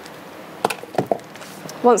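A lump of solidified, melted-out wax put down on the kiln's brick floor, giving a few short knocks around the middle.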